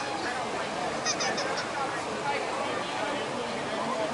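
Several people talking and calling out across an open field, their voices indistinct, with a few short high-pitched chirps just after a second in.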